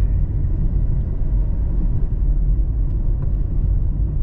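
Steady low rumble of a car's engine and road noise heard from inside the moving car.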